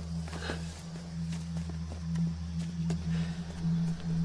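A low, steady droning rumble with a slow pulse in it, the ominous sound bed of a horror film scene. Faint scuffs and rustles of people clambering over rock and through leaves sit on top of it.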